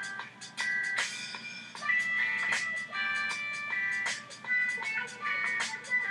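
Background music: a melody of bright, chime-like held notes over regular percussive hits.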